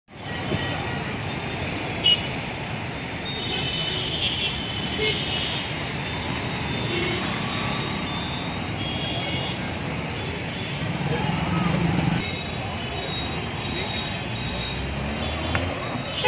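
Steady noise of busy road traffic, with cars and motorbikes passing close by. Two brief sharp sounds stand out, about two seconds in and about ten seconds in.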